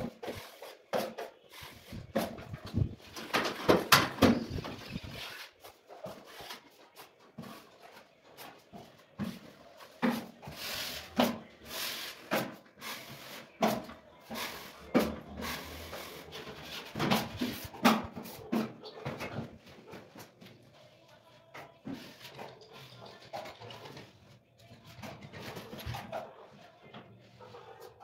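Steel finishing trowel spreading and scraping joint compound over drywall joints: a run of irregular scraping strokes of the blade against the board.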